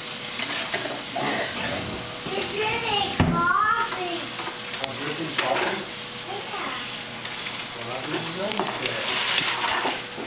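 Butter sizzling as it melts in a hot nonstick skillet, with a sharp knock about three seconds in.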